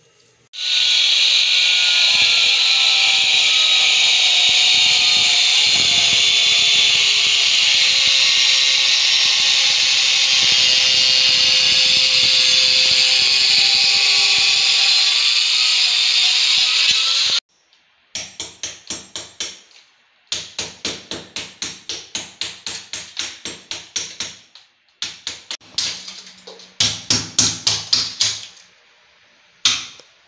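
Angle grinder with a diamond blade cutting a ceramic tile: a steady, high grinding noise that stops abruptly about seventeen seconds in. Then come several bursts of sharp, evenly spaced knocks, about three a second.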